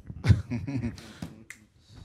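A low murmured voice, then a single sharp snap about one and a half seconds in.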